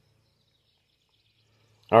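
Near silence with a faint low steady hum, then a man's voice starts right at the end.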